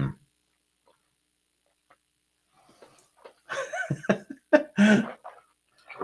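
A man making short, wordless vocal sounds (hums and murmurs while tasting whiskey) in a brief cluster about three and a half seconds in, after a near-silent stretch.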